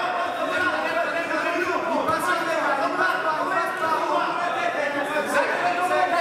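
Indistinct chatter of many voices talking at once, steady throughout, in a large hall.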